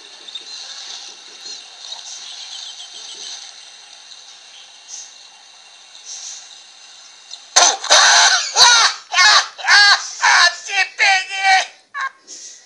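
Quiet hiss with faint high chirps, then about seven and a half seconds in a sudden, loud, high-pitched screaming voice in repeated shrieks: a jump-scare scream.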